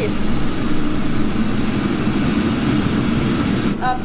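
Steady low roar of a commercial kitchen's gas burners and exhaust ventilation, running at high flame under a wok and a charbroiler.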